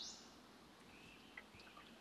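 Near silence: faint outdoor room tone, with a few faint, short, high chirps about a second in.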